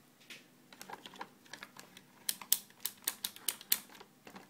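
A run of sharp plastic clicks and taps from handling multimeter test leads, clips and the meter. A few are scattered at first, then about seven loud ones come in quick succession in the second half.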